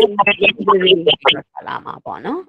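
Speech: a person talking over an online video call.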